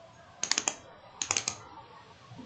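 Two short bursts of typing on a computer keyboard, each a quick run of three or four keystrokes, a little under a second apart.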